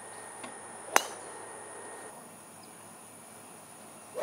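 A driver striking a golf ball off the tee: one sharp crack about a second in. Under it, a steady high-pitched drone of insects.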